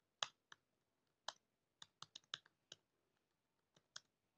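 Computer keyboard keystrokes: about ten short clicks at uneven intervals as text is typed.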